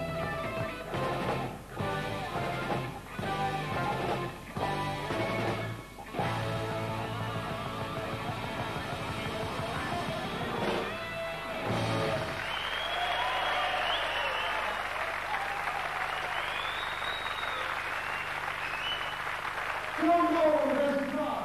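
Live rock band with electric guitar, bass guitar, drums and keyboards playing the closing section of a piece in a run of loud hits with short breaks, ending about twelve seconds in. The audience then applauds for the rest of the time.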